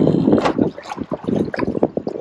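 Paddle strokes from a one-person outrigger canoe: the blade going into and out of the water in short, irregular splashes, with wind on the microphone.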